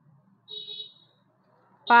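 A short, high buzzing beep about half a second in, lasting about half a second.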